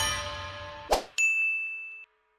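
Outro logo sting: a music track fades out, a brief hit sounds about a second in, then a bright ding rings on and fades away.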